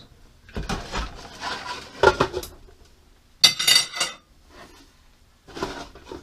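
A utensil scraping and knocking against a frying pan of steak in several separate bursts of clatter, the loudest and brightest about three and a half seconds in. Near the end the pan's glass lid is set down on it.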